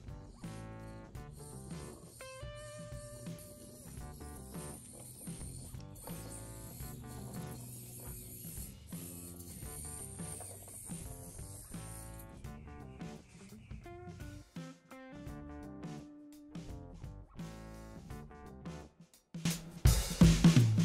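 Background music, with the whir and ratchety gear noise of a micro RC car's tiny electric motor and gear train as it crawls over rough terrain.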